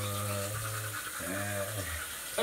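Teeth being brushed with a manual toothbrush, a steady scrubbing hiss, while a person's voice hums a held note that ends about half a second in, then a shorter rising-and-falling one.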